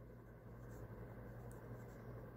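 Faint scratching of a pen writing on lined notebook paper, over a low steady hum.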